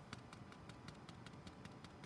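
Faint rapid ticking, about six small clicks a second, from heat-embossing powder being applied to a freshly inked stamped card front, its grains landing on and shaken off the paper.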